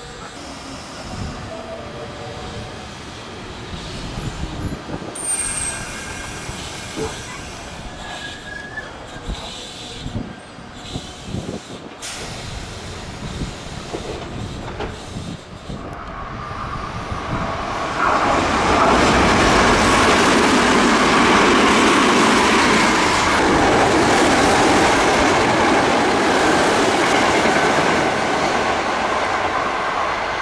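Electric commuter train sounds at a station: quieter rail noise with a few brief squeals at first, then a Sanyo 6000 series train's wheels and running gear rumbling in, growing loud about eighteen seconds in and easing near the end as it slows to stop.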